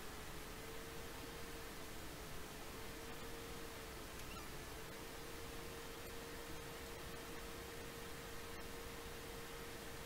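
Faint steady hiss with a thin, steady hum tone running through it: background noise of the recording, no speech.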